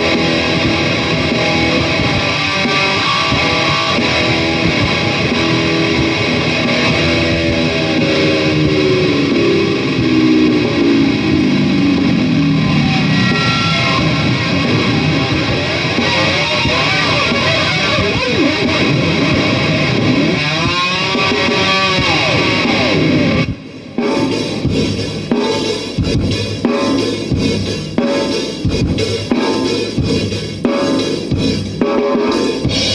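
Distorted electric guitar on a Dean ML played hard, with a long falling pitch dive in the middle and several swooping dips in pitch near the end. The guitar cuts off suddenly about 23 seconds in, leaving a rock drum loop playing alone.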